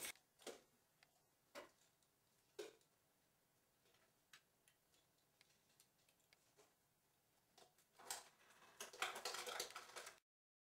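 Near silence broken by faint, scattered clicks, a few single ticks spaced about a second apart, then a quicker, louder run of clicks near the end.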